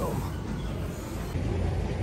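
Steady low rumble of gym cardio machines running.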